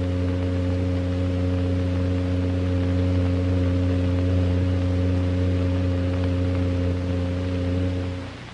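A steady low hum made of several held tones that stay at one pitch throughout.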